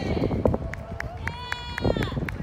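Outdoor ambience with a low, constant rumble on the microphone and scattered sharp clicks. About a second and a half in comes a long, high, steady call from a distant voice.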